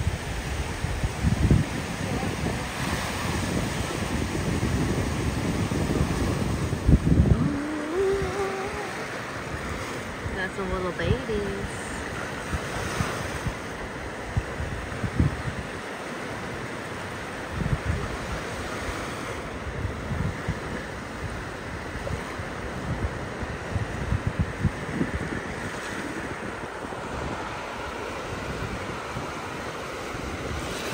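Small waves washing up onto a sandy beach, a steady surf wash, with wind gusting on the microphone in irregular low rumbles.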